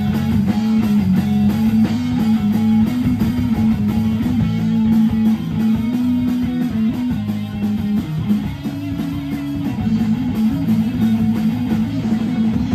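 A rock band playing live: electric guitar and bass guitar over a drum kit, loud and continuous.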